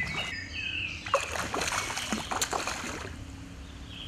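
Hooked trout splashing and thrashing at the water's surface as it is played on a fly rod, the splashes bunched about one to two and a half seconds in.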